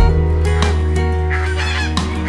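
A rooster crows briefly in the second half, over background guitar music with a steady bass.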